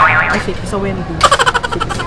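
Speech: a man's voice in short bursts, over a steady low background hum.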